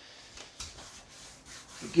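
Hands pressing a strip of adhesive-backed EVA foam turf down onto an aluminum plate and rubbing across the metal: a faint, soft rubbing.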